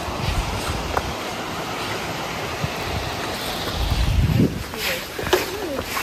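Steady rushing of falling water from a waterfall, with a low buffet of wind on the microphone about four seconds in.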